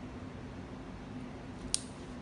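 Steady low hum of the room, with a single short, sharp plastic click near the end as a syringe is worked on the luer port of a tunnelled dialysis catheter.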